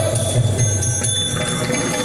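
Yakshagana ensemble music: bronze hand cymbals (tala) ringing steadily over the low, pulsing strokes of the maddale drum, with the jingle of the dancers' ankle bells.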